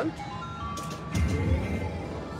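Wheel of Fortune video slot machine playing a short electronic chime melody of stepped notes as the reels start spinning.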